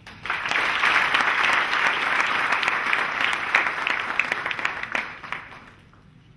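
Audience applauding at the end of a talk. The clapping starts a moment in and dies away over the last second or so.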